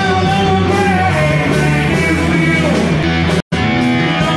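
Live rock band playing: electric guitar, bass and drum kit with a male singer. The sound cuts out for a split second near the end.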